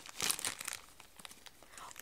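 Plastic blind-bag packet crinkling as it is squeezed and pulled open by hand, busiest in the first second, then only faint crackles.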